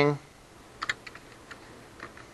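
Computer keyboard typing: a few separate keystrokes, a quick pair just under a second in and another about half a second later.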